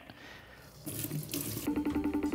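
A tap running, its water falling into a sink, starting about a second in. Music comes in near the end.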